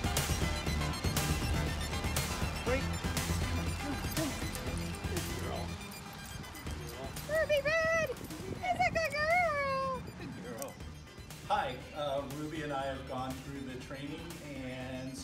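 Background music with a beat that stops about six seconds in. It is followed by a run of high, arching whines from an excited Greater Swiss Mountain Dog as it jumps up against a person.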